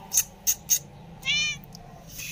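Three quick soft clicks, then a single short high-pitched meow from a tabby house cat being petted.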